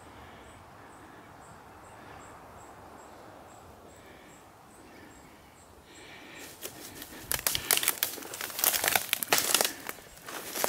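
Dry sticks and brush crackling and snapping as someone pushes through undergrowth, starting about six seconds in and growing loud. Before that it is quiet, with a faint high ticking about three times a second.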